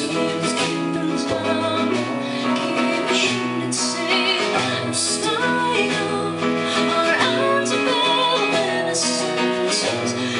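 A song performed live: a woman singing with instrumental accompaniment, her voice wavering on held notes through the middle.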